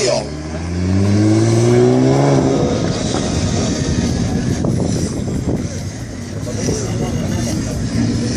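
Nissan GT-R's twin-turbo V6 revving up as the car pulls away, its pitch rising for about two and a half seconds, then a rougher, noisier engine sound that dips around six seconds and swells again near the end.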